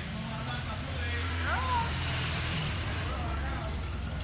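Street sound of a motor vehicle engine running, a steady low hum, under people's voices, with a brief high sliding tone that rises and falls about a second and a half in.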